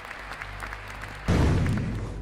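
Audience applauding, then, a little over a second in, a sudden loud booming hit with a deep low end that slowly fades as the closing music begins.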